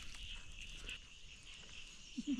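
Faint, steady high-pitched chirring of insects, with a low rumble underneath.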